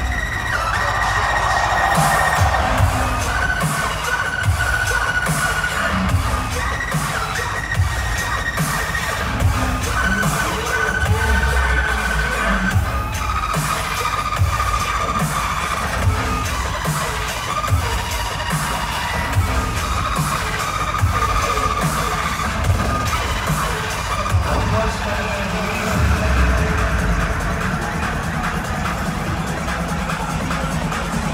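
Loud live dubstep played through a concert sound system and recorded from within the crowd. Heavy bass hits repeat under held high synth lines, with crowd cheering mixed in.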